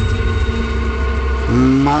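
A deep low rumble over a steady background drone, ending about one and a half seconds in as a voice begins.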